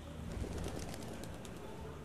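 Outdoor ambience with birds chirping in a quick cluster of short high calls, over a steady low rumble.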